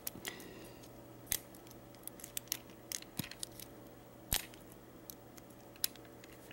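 Faint metallic clicks and scrapes of a lock pick working the pin stack of a Master Lock No. 1 padlock during single-pin picking, with three sharper clicks: about a second in, past four seconds and near the end.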